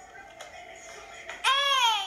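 A young girl's high-pitched, drawn-out yell, coming in loud about one and a half seconds in after a quiet stretch.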